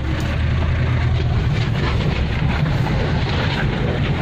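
A 4x4 jeep driving, heard from inside its cabin: a steady low engine rumble under an even rushing road-and-wind noise.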